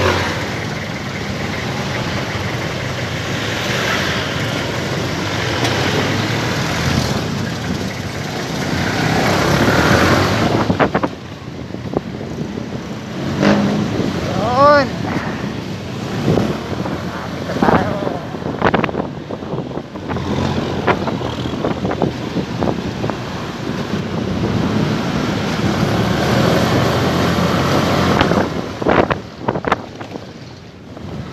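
Small motorcycle being ridden in night traffic: engine running under wind and road noise that is loudest for the first ten seconds or so, then eases. A brief wavering tone comes about halfway through, and there are scattered sharp knocks.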